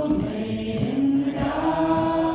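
A woman singing a song through a microphone, unaccompanied, settling into a long held note in the second half.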